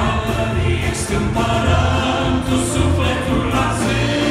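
Male vocal group singing a Romanian Christian worship song in harmony, accompanied by a live band with electric bass guitar and piano.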